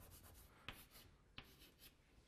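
Faint scratching of writing on a board, a few strokes with sharper taps about two-thirds of a second and a second and a half in, in a small room.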